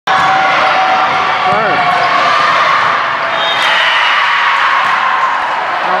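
Volleyball rally on an indoor court: ball contacts and sneaker squeaks on the court floor over a steady din of spectator and player voices.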